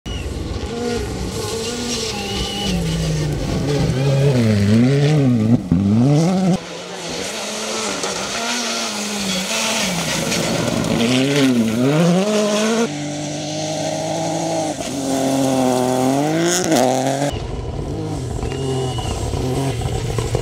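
Rally cars at speed on gravel stages, engines revving high and dropping back again and again through lifts and gear changes. Several separate passes follow one another, the sound changing abruptly three times.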